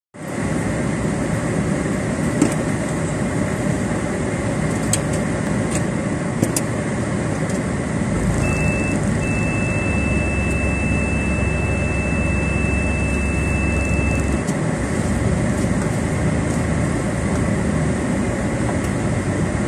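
Steady cabin noise of a car running as it pulls away from the kerb, heard from inside. A few light clicks come in the first seven seconds. From about eight seconds in, a steady high tone and a deeper hum hold for about six seconds, then stop.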